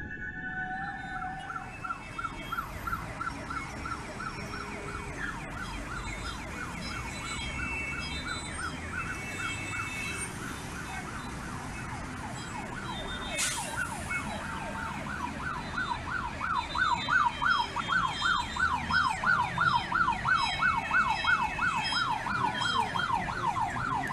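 Emergency vehicle siren on a fast yelp, its pitch rising and falling about three times a second, growing louder over the last several seconds as it draws nearer.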